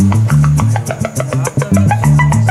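Live music: an electric guitar played over a repeating loop, with a low bass figure that comes round about every two seconds and a run of quick, sharp percussive strokes on top.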